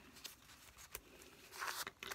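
Faint rustling of a pleated paper napkin handled between the fingers as it is gathered into a fan. A soft click comes about halfway, and a short, slightly louder rustle comes near the end.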